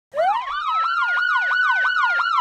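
Police car sirens: a slow wail rising in pitch, overlaid by a fast yelp sweeping up and down about three times a second.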